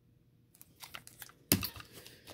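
Hard plastic card holders clicking and tapping against each other as they are handled and set down, a quick run of small clicks with a sharper clack about one and a half seconds in.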